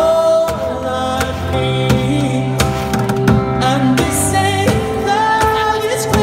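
A man singing a song while beating a plastic bucket with drumsticks as a drum, the strokes keeping a steady beat over long held low notes.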